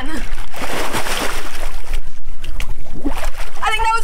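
A person flipping backward into a swimming pool: a large splash and churning water for about two seconds, then the water settling. Her voice comes back near the end.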